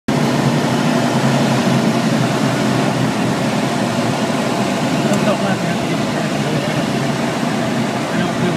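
Cockpit noise of a Van's RV-6 light aircraft in flight: its piston engine and propeller drone loud and steady.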